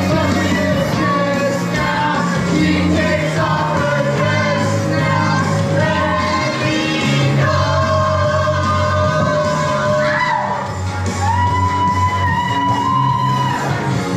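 Karaoke: a man singing into a microphone over a loud pop-rock backing track, holding long notes in the second half, with shouts from the room.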